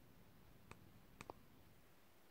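Near silence: room tone, broken by three faint short clicks, one about a third of the way in and two close together just past the middle.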